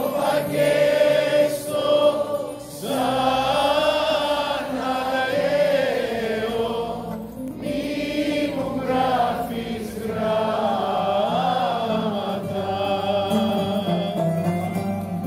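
Live performance of a Greek popular song: sung vocal lines with a choir over a band of guitar and plucked strings, with short breaths between phrases at about three and seven seconds in.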